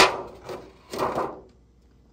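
A clear plastic lid being fitted onto an aluminium foil pan and pressed down: a sharp clack as it lands, then two crinkly rubbing handling sounds of plastic on foil about half a second and a second later.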